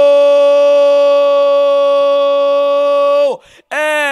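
A football commentator's long drawn-out goal cry, one high note held steady for several seconds that drops and breaks off a little past three seconds in. After a short pause, a second, shorter shout slides down in pitch near the end.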